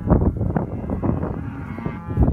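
Cattle mooing: one drawn-out, steady call in the second half, after about a second of rustling and knocks.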